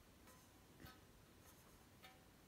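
Near silence with faint handling noise: fingers shifting on a printed metal tin as it is turned in the hands, with one light tick a little under a second in.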